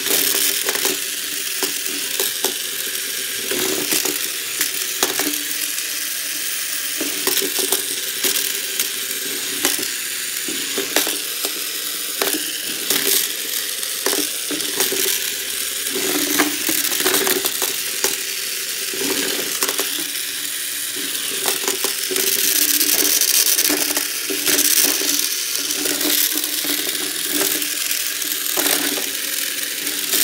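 Two HEXBUG BattleBots toy robots driving and shoving each other. Their small geared electric motors keep up a steady whir, with frequent sharp plastic clicks and clacks as the bots bump together and knock against the arena's wooden floor and walls.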